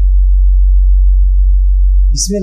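Loud, deep, steady electrical hum from mains hum picked up in the studio microphone or audio line, heard on its own with no voice over it.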